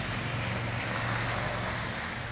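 A vehicle engine running with a steady low hum, under a faint even hiss of road or wind noise.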